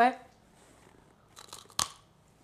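A bite into a chocolate-dipped honeycomb candy bar: a few faint crackles, then one sharp crunch near the end as the hard chocolate coating and the brittle candy break.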